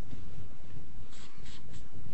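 Steady background hiss and hum of a lecture-hall recording, with a few faint short scratches or taps in the second half.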